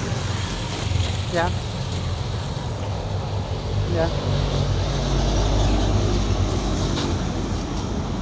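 Low, steady rumble of road traffic, swelling a little in the middle as a motorbike passes.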